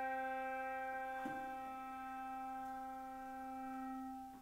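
A brass handbell ringing one sustained note that fades slowly. It is struck again about a second in and rings on.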